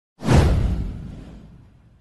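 A whoosh sound effect with a deep low rumble under it. It starts suddenly a moment in, sweeps down in pitch and fades away over about a second and a half.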